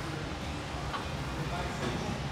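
A steady low hum of background room noise, with no distinct event standing out.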